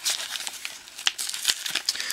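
Pokémon card blister pack being handled and opened: the plastic blister and foil booster wrapper crinkling, with a few sharp crackles, one about a second in and another about a second and a half in.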